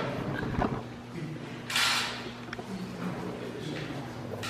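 Quiet meeting-hall room tone with a steady low hum and faint murmur. A short rustle comes a little before the middle, followed by a single sharp click.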